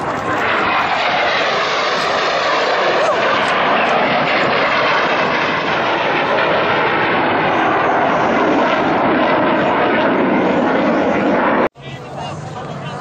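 Loud, steady jet noise from a General Dynamics F-16 Fighting Falcon flying a low, fast pass and climbing away. The sound cuts off suddenly near the end.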